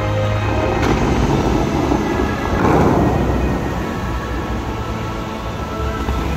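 Dubai Fountain show music playing over loudspeakers. About a second in, the fountain's water jets fire with a sudden burst, followed by a rushing noise of water that swells to its loudest near the middle and then eases.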